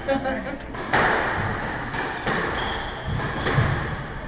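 Squash ball hit by rackets and striking the court walls during a rally: three sharp cracks, about a second in, near the middle and near the end, each ringing on in the enclosed court.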